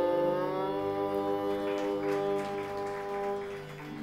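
Carnatic violin playing long bowed notes, sliding up in pitch about half a second in and then holding, over a steady tambura drone.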